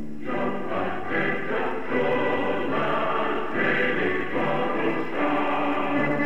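Choir and instrumental ensemble performing a Persian-language political anthem, in a continuous passage without clearly sung words.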